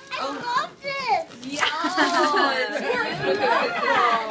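Several people talking and exclaiming over one another, with no pause.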